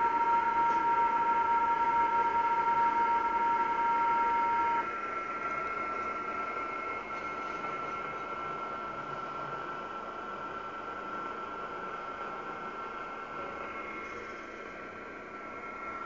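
A Kenwood R-2000 shortwave receiver tuned to the 7 MHz band plays static hiss with several steady digital-mode signal tones. The strongest, lowest tone cuts off about five seconds in, and the sound then carries on quieter, mostly hiss with fainter tones.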